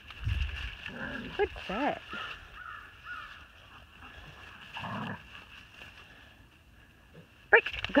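Dogs vocalizing while they play: short whining, yelping calls that bend up and down in pitch about two seconds in, a few brief calls after that, and a louder call near the end.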